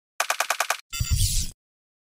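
Intro sound effect: a rapid burst of about seven sharp clicks, then a short rushing noise with a low rumble that stops cleanly about a second and a half in.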